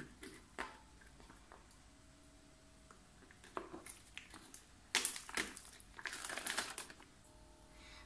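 Plastic packets crinkling as they are squeezed, with a few light clicks and crackles. The paste is being emptied into a stainless steel bowl, and the sound is busiest about five to seven seconds in.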